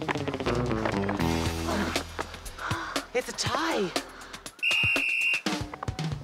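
Upbeat background music for a race, its notes stepping downward in the first half, with sliding sound effects in the middle. A single steady high tone sounds for under a second near the end.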